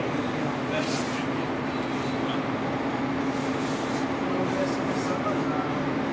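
Steady machine drone with a constant low hum, and indistinct voices in the background.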